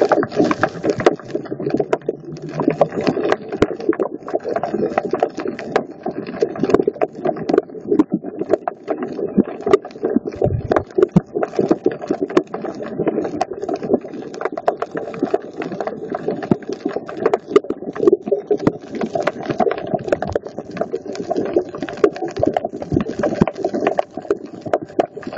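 Underwater sound through a phone's microphone: a dense, continuous crackle of clicks over a muffled low wash, with a brief low hum about ten seconds in.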